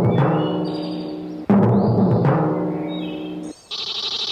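Timpani struck with soft mallets: a note rings and fades, and a second stroke about a second and a half in rings until it is cut off. Near the end a steady, high, pulsing buzz of a cicada begins.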